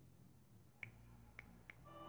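Near silence over a low hum, broken by three faint sharp clicks in the second half, the last two close together; music starts just before the end.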